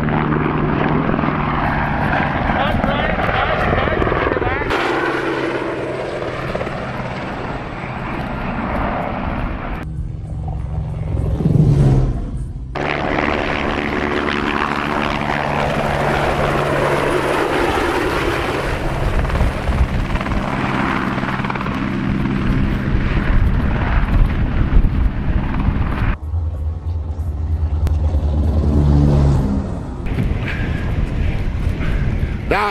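Camera helicopter flying low and close past, its rotor and turbine running loudly and steadily. The sound breaks off and resumes abruptly several times.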